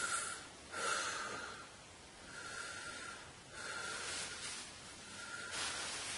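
A man taking slow, deep breaths in and out, a series of long breathy swells about a second each.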